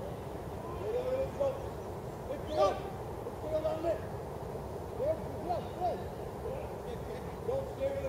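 Distant shouts and calls from football players across the pitch: short rising-and-falling calls every second or so, over a steady low background rumble.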